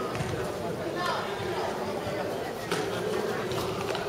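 Indistinct voices talking, with a few faint taps.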